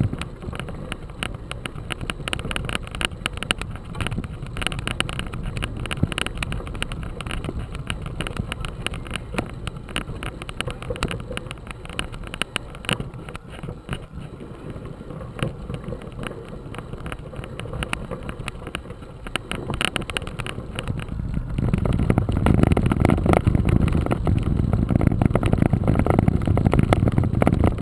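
Mountain bike rolling along a gravel dirt road, tyres crunching over stones and the bike rattling with a dense run of small clicks. About three-quarters of the way through, a louder low rumble of wind on the microphone comes in.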